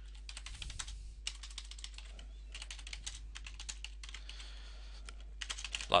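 Typing on a computer keyboard: quick runs of faint key clicks with short pauses between them, as a line of code is typed.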